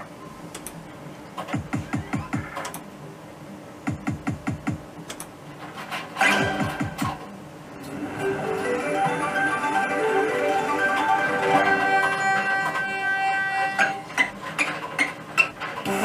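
Electronic sounds of a Merkur Rising Liner slot machine: quick runs of ticks in the first half and a louder burst about six seconds in. From about eight seconds in, a synthesized jingle plays.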